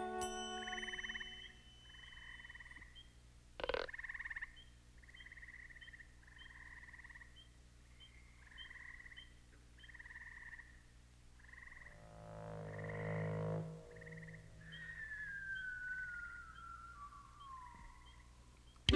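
Quiet animation soundtrack of frog-like croaks repeating about once a second, with small high chirps between them. A single sharp noise comes about four seconds in, a low drone swells around twelve seconds, and a slow falling whistle runs near the end.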